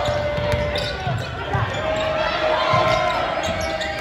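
Basketball dribbled on a hardwood gym floor, a series of low thuds, under the chatter and shouts of spectators in the echoing gymnasium.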